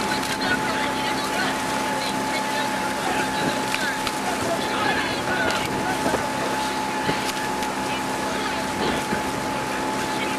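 Outboard motor of a coaching launch running steadily at cruising speed, with wind and water noise.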